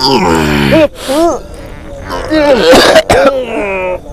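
A person's wordless vocalizing: a long groan falling in pitch, then short wavering cries, and a rasping, throaty sound with a sharp click about three seconds in.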